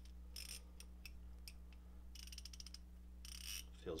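Koken Zeal 3/8-inch flex-head ratchet with its new 72-tooth mechanism being worked by hand: three short runs of fast, fine clicks, with a few single clicks between them.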